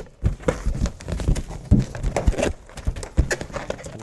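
Inflated rubber balloons being handled and twisted together at the necks, making a string of irregular hollow thumps and rubbing knocks.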